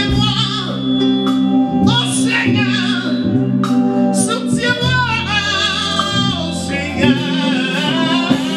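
Live gospel song: a male lead singer sings long, wavering held notes into a microphone over sustained electronic keyboard chords.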